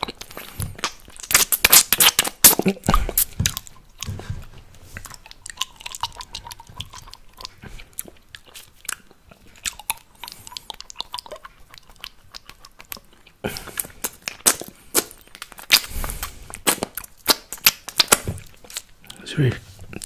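Wet mouth sounds right at the microphone: licking and sucking on a lollipop, with sharp smacks and clicks of lips and tongue. They come in dense runs in the first few seconds and again in the second half, sparser and quieter in between.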